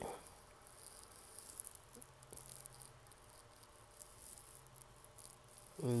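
Quiet room tone: a faint steady low hum and hiss, with a few faint soft ticks in the first half.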